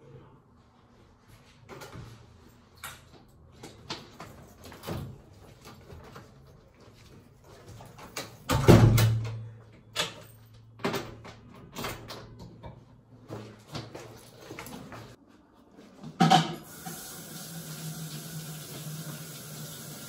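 An apartment door being worked: clicks and knocks from the lock and lever handle, a heavy thud a little before halfway as the door shuts, then further clicks and rattles as the door's security chain is fastened.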